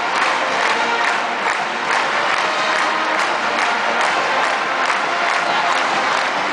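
Large stadium crowd cheering and shouting, with a steady beat about twice a second underneath.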